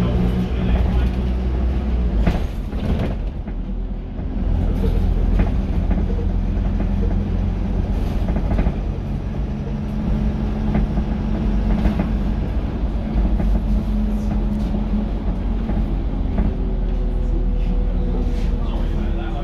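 Dennis Dart SLF single-deck bus heard from inside the passenger saloon while under way: a steady diesel engine and drivetrain drone with scattered interior rattles and clicks. The engine sound drops back briefly about three seconds in, then picks up again.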